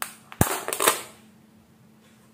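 Snap-on lid of a plastic tub being pried open: one sharp snap about half a second in, followed by a brief crackle and scrape of plastic.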